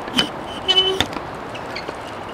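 Outdoor hard-court ambience with a short high toot about two-thirds of a second in, like a brief horn, followed by a sharp tap about a second in as a tennis ball strikes the court.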